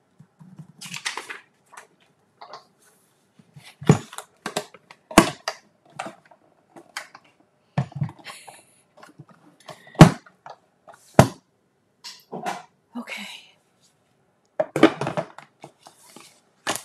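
Plastic cutting plates and the fold-out platform of a Stampin' Cut & Emboss die-cutting machine being handled and set down: a string of separate sharp knocks and clicks, with paper rustling between them.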